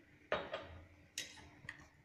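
A few separate light clicks and clinks of kitchenware: a spoon knocking in the mixing bowl and small steel spice bowls being handled.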